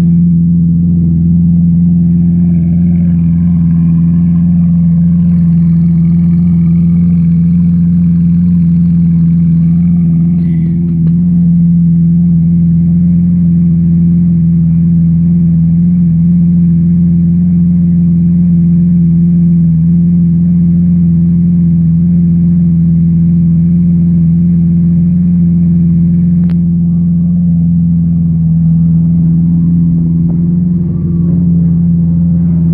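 Lamborghini Aventador's V12 engine idling steadily with a low, even drone. A single sharp click comes near the end.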